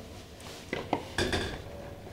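A plastic basin of water knocked and clattered by hands washing water lettuce in it: about four sharp knocks close together in the middle of the clip.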